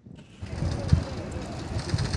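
Outdoor waterfront ambience with people's voices, coming in suddenly about half a second in over low, uneven rumbling.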